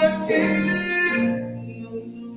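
Slow music played on an electric keyboard with sustained, string-like notes; the phrase fades away over the second half.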